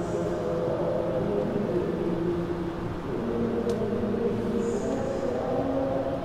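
A steady low rumbling drone with sustained tones that hold and step to new pitches every second or two.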